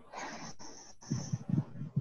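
A person breathing audibly close to a headset or laptop microphone: a long breathy exhale, then a run of short, low, hesitant breaths or murmurs.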